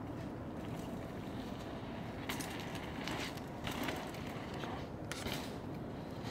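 Steady low wind rumble on the microphone, broken by a few brief scraping knocks around two, three and five seconds in.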